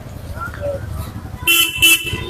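Motorcycle horn beeping twice in quick succession near the end, over low street rumble.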